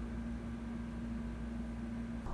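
Steady low hum and hiss of room tone, with one faint steady tone running through it.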